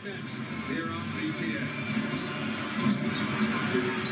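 Television sound from a basketball highlights broadcast: music with a voice over it, played through the TV's speaker.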